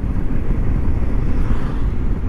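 Steady low rumble of a Suzuki GS motorcycle running at road speed, mixed with wind on the microphone.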